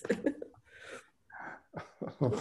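A person's short, breathy vocal sounds in a few brief bursts.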